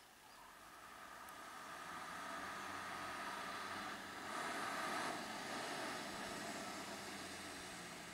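Diesel engine of an Isuzu FTR box truck running as it creeps forward, faint at first, growing louder to a peak about halfway through, then easing off.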